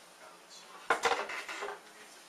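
A sharp knock about a second in, followed by a brief clatter of small hard objects.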